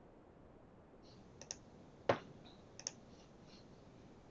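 A handful of faint computer mouse clicks, the loudest about two seconds in.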